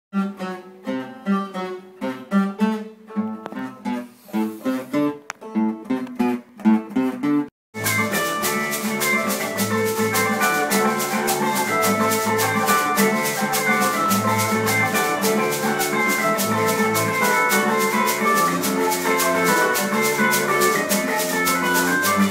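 Acoustic guitars playing a live jam. First one plucked line goes note by note, then after a brief dropout about a third of the way in, several guitars come in together with dense, fast picking and strumming. Under them a metal tube shaker (ganzá) keeps a steady fast pulse.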